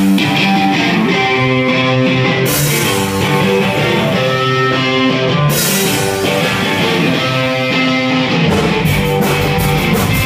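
Live rock band playing a song: electric guitar chords with cymbal crashes every few seconds, and a steady drum beat coming in near the end.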